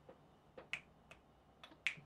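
Fingers snapping about four times at uneven spacing, the loudest snaps about three quarters of a second in and just before the end.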